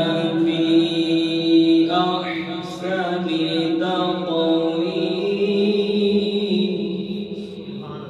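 A man reciting the Quran in a melodic, chanted style, holding long sustained notes with slow turns of pitch; the voice tapers off near the end.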